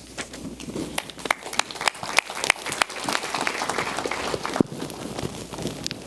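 Audience applause: many separate hand claps, thinning out toward the end.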